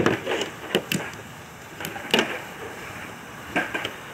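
Fingerboard clacking on a tabletop and small wooden and plastic ramps: a handful of sharp clicks and knocks, some coming in quick pairs.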